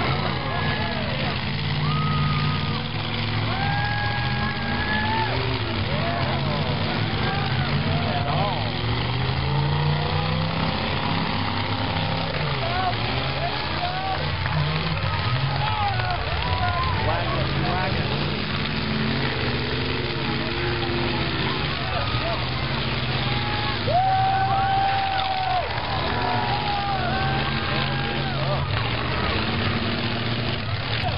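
Several demolition-derby cars' engines revving at once, their pitch sweeping up and down, mixed with crowd voices and a few long held tones.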